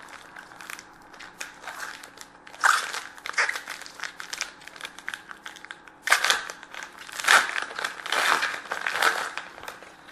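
A shiny foil hockey card pack wrapper being torn open and crinkled by hand, in crackling bursts that are loudest around three seconds in and again from about six to nine seconds.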